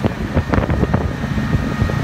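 Wind buffeting the microphone on the open top deck of a moving art car, over the low rumble of the vehicle. A faint steady high whine runs underneath from about halfway through.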